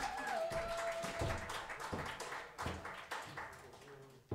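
Scattered audience clapping, irregular and thinning out, with a long wavering vocal call from the crowd that trails off about a second in.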